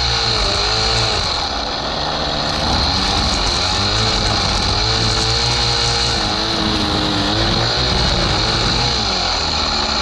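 ECHO SRM-2620 two-stroke string trimmer running hard, its engine pitch rising and falling as the throttle is worked, while the line cuts through overgrown grass and weeds.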